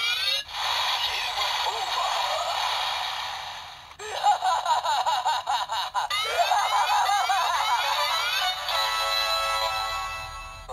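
DX Gashacon Bugvisor II toy playing its electronic sound sequence through its small built-in speaker: sweeping sound effects, music and recorded character voice lines, ending in a run of steady electronic tones.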